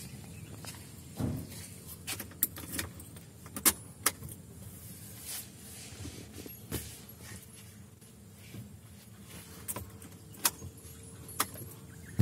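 Scattered sharp clicks and knocks of handling inside a pickup truck's cab, over a faint steady hum.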